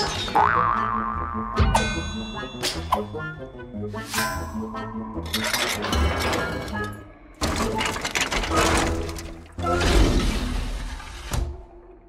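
Animated cartoon soundtrack: playful background music with comic sound effects, a springy boing and several thuds, and a long whooshing rush about ten seconds in.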